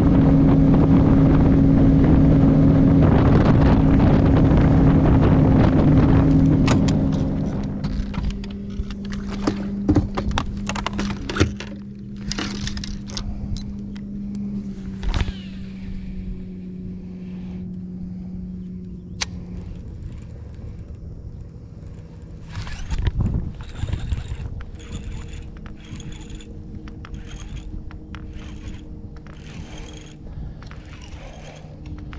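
Bass boat outboard motor running at speed with rushing wind and hull noise, easing off about seven seconds in to a lower steady hum that dies away at around twenty seconds. Scattered clicks and ticks of rod and baitcasting reel handling follow.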